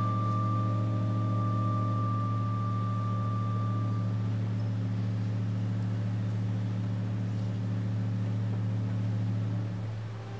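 A loud, steady low drone with overtones, and a higher steady tone above it that fades out about four seconds in. The drone stops just before the end.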